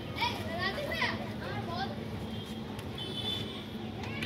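Chickens calling in the pen: several short, high calls that bend up and down in pitch, crowded into the first two seconds, over a steady low hum.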